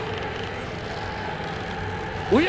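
Steady rumbling ambient noise from a film soundtrack, an even wash with a faint hum and no distinct events.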